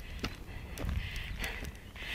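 Wind buffeting the camera's microphone, a low rumble that swells about a second in, with a few light clicks.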